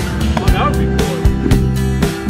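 Background music with a steady beat, with a brief voice-like call over it about half a second in.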